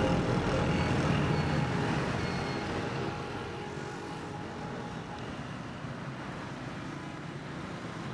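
City street traffic ambience: a steady hum of passing cars. Background music fades out over the first few seconds.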